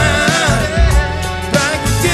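Old-school R&B song in a DJ mix: a voice singing over a bass-heavy beat with deep kick-drum hits.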